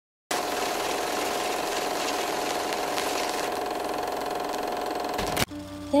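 A steady mechanical whirring hum with a constant tone over a hiss, starting just after the opening and cutting off suddenly about five and a half seconds in.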